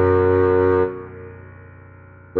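Bassoon holding one low note of the melody. The note stops about a second in and its sound fades away.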